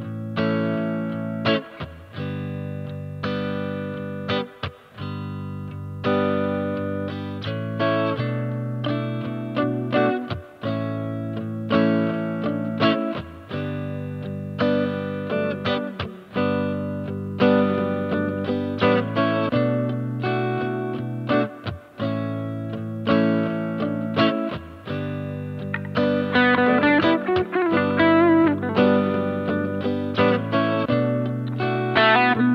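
Electric guitar played through a Boss Dual Cube LX amp with a drive sound. Chords ring out and change every second or two, with a busier run of quick notes near the end.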